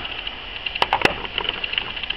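Sharp clicks of chert pieces knocking against other rocks and the wooden table top as they are picked up and handled: three louder clicks close together about a second in, with fainter ticks around them.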